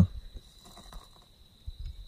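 A night insect, likely a cricket, calling one steady, unbroken high tone, over scattered low rumble on the microphone.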